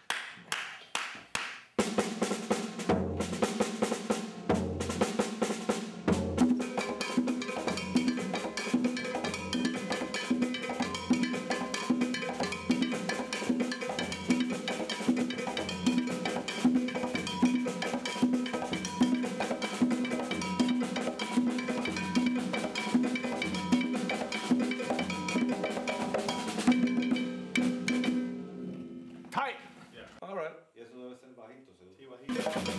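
Cuban-style percussion ensemble: congas played by hand with cowbell and other percussion, a trumpet playing over them. It opens with a few evenly spaced sharp strikes, then the full band comes in about two seconds in on a steady pulse of about two beats a second, and stops near the end.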